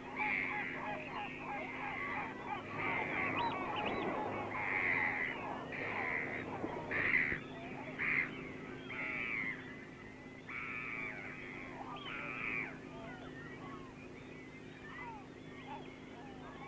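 A flock of birds calling: a run of short, loud calls, one or two a second, over a constant chatter of fainter calls, thinning out after about thirteen seconds. A low steady hum runs underneath.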